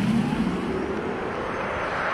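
Porsche Taycan Cross Turismo electric car driving past and away on asphalt: steady tyre and road noise, with a low hum that falls in pitch as it goes by in the first second.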